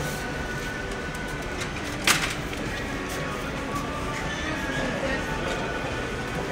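Supermarket ambience: background music and distant voices over a steady hubbub, with one sharp clatter about two seconds in.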